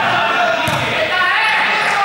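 Several people's voices calling and chattering in an echoing sports hall, with a ball bouncing on the court floor twice, about a second apart.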